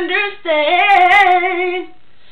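A girl singing alone without accompaniment, in a voice she herself calls hoarse: a short sung note, a brief break, then a long held note that wavers slightly and stops just before the end.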